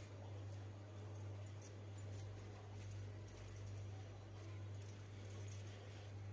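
Faint small clicks and crackles of a sesame-and-jaggery filling being pressed by hand into a hinged plastic modak mould, over a steady low hum.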